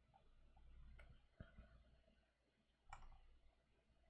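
Near silence with about three faint, sharp clicks from working a computer, about a second in, shortly after, and near three seconds.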